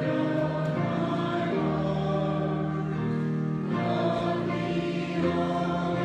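Congregation singing a hymn together in slow, held notes, the chord changing every second or two.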